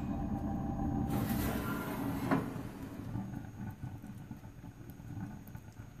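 A homemade waste-oil burner in a converted coal stove runs with a steady low rumble that dies down over the last few seconds as the stove door is opened and the air stops being forced through its center pipe. A single clank sounds about two seconds in.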